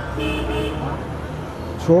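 A brief vehicle horn toot, one steady pitched tone lasting about half a second, over a low steady background hum; the man's voice resumes near the end.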